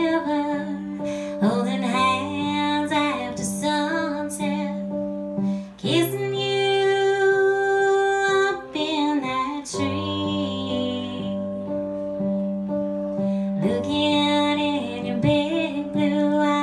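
Live country song on electronic keyboard, with sustained chords. A woman's voice sings over it in the first few seconds and again near the end.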